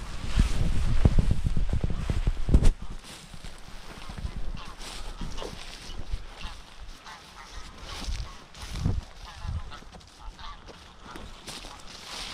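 Geese honking from a flock on the open water, in short scattered calls. For the first three seconds a louder low rumble with knocks sits on the microphone.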